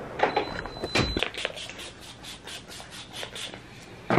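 Faint rustling and light knocks from handling and moving about with a handheld camera, with a brief thin high-pitched squeal early on and a sharper thump about a second in.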